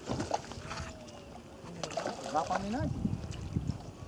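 People talking in the background, their voices indistinct.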